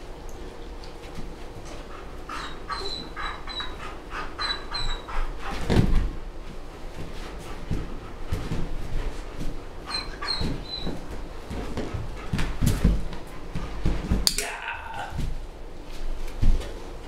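German Shepherd whimpering in short, high-pitched whines, in little clusters of two or three, with a few dull thumps as she shifts her paws on and off an inflatable balance disk.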